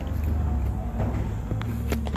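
Handling noise from a phone carried and swung about by hand: a low steady rumble with a few light clicks.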